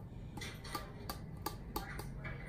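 A utensil clinking against an open metal tuna can as the tuna is scraped and tapped out into a bowl of pasta, about five light sharp clicks.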